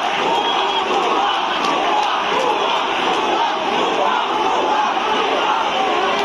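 A large crowd of marching protesters shouting slogans, many voices overlapping at a steady, loud level.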